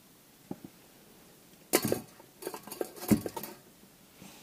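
Round wire mesh rack lifted and set down on stainless steel bowls, its wires clattering and clinking against the metal: a loud clatter a little under two seconds in, then a quick run of clinks with the sharpest about three seconds in.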